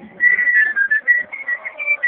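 A quick tune of short, high whistled notes, stepping up and down in pitch.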